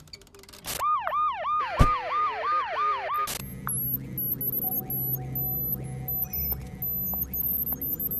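Advert sound design: a siren-like warbling tone that sweeps up and down about three to four times a second for a couple of seconds, with a sharp click partway through. It gives way to a low steady hum with short high beeps.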